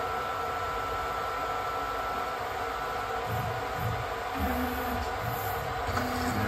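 Stepper-driven axes of a Milo v1.5 mini CNC mill moving the touch probe during a corner-probing routine. A steady high whine holds for about the first three seconds and then stops, followed by low rumbling of axis moves.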